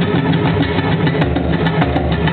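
Live band playing an instrumental passage with bass guitar, acoustic guitar and drums, bass-heavy and loud on an audience recording.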